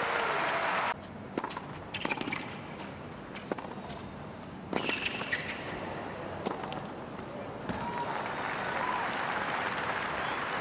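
Tennis ball struck by rackets in rallies on a hard court: sharp single pops about a second apart over low crowd murmur. The crowd noise swells near the end.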